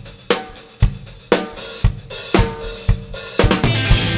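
Drum kit played alone in a live room: a steady beat of heavy drum hits about two a second with cymbal and hi-hat, ending in a quick fill just before the band comes in.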